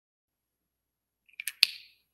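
Near silence, then a few small plastic clicks and one sharp click near the end, with a short hiss: a felt-tip marker being handled and put away after drawing.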